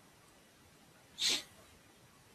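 Near silence, broken a little past a second in by one short, sharp breath sound from a person.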